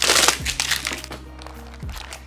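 Clear plastic shrink-wrap crinkling as it is peeled off a tin sweet box, loudest in the first second and then fading, with soft background music underneath.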